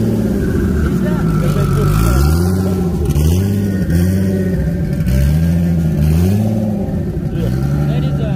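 Turbocharged Nissan Skyline engine swapped into a Subaru, revved in repeated blips, about five in all, each rising and falling in pitch.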